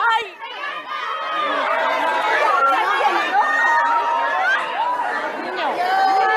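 A packed crowd of many people talking and calling out over one another, a dense, continuous hubbub of voices with no single speaker standing out.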